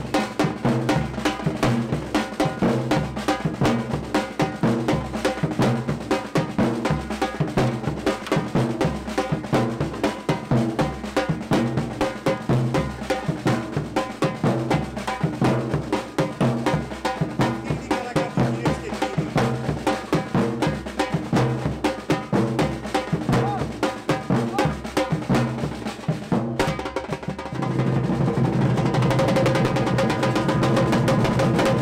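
Street percussion band of large shoulder-slung bass drums and snare-type drums, struck with mallets and sticks, playing a steady, driving carnival rhythm. Near the end the drumming gives way to a louder, steadier sound.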